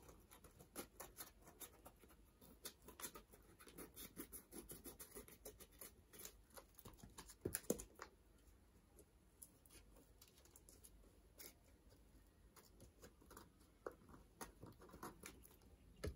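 Scissors cutting through paper, trimming off the excess: a faint run of small snipping clicks, closest together in the first half and sparser after that.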